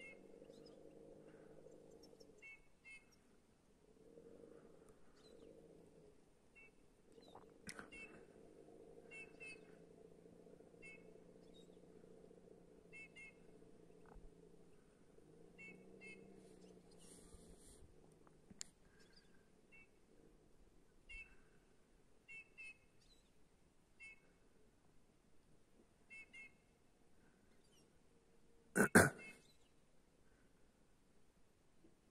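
Eurasian bullfinch calls: soft, short whistled notes in pairs, repeated every second or so at irregular intervals over a faint low hum. A single sharp knock sounds near the end.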